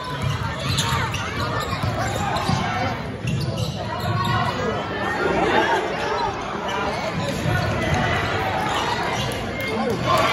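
Basketball being dribbled and bounced on a hardwood gym floor during a game, with players and spectators shouting and talking throughout, all echoing in a large hall.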